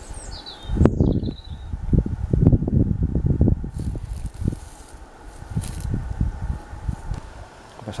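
Wind buffeting the microphone in irregular low bursts, with a small bird giving a few quick, falling chirps in the first two seconds.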